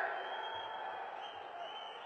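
A pause in a man's speech: faint, steady background noise, with the last of his voice fading out at the very start.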